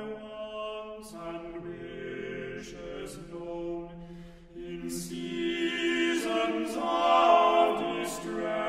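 Male vocal quartet singing an American folk hymn a cappella in close harmony: held chords with crisp sibilant consonants, swelling to their loudest near the end.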